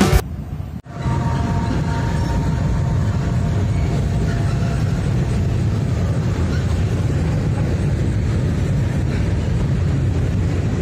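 Freight cars of a Norfolk Southern train rolling across a steel girder bridge: a steady low rumble of wheels on rail that starts about a second in.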